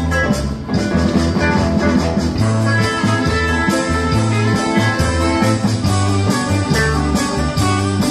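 Small live band playing an instrumental passage: electric bass holding steady notes under guitars and keyboard, in an even beat.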